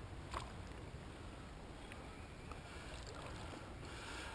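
Faint lapping and stirring of shallow creek water as a hand and dip net move in it, with one light knock about a third of a second in.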